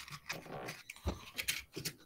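A dog making a series of short, irregular sounds of uneven loudness.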